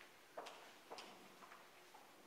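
Faint footsteps: a few soft clicks about half a second apart as someone walks to a pulpit, over near-silent room tone.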